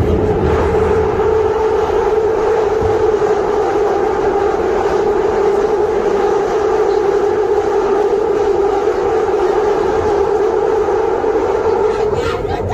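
London Underground train running, heard from inside the carriage: a loud steady drone with a held humming tone.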